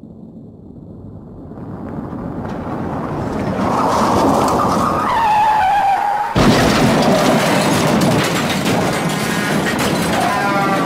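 An edited outro sound effect: noise swells up over about four seconds with a whining tone that falls, then a sudden loud hit about six seconds in that carries on as a dense, loud rush.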